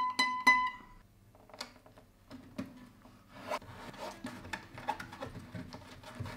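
A few plucked notes on a gypsy jazz acoustic guitar, ringing out and dying away within about a second. After that come faint scattered clicks and rustles of hands on the guitar top as duct tape is pressed down over a clip-on pickup.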